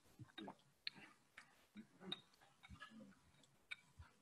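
Near silence broken by faint, irregular clicks and knocks, about eight in four seconds.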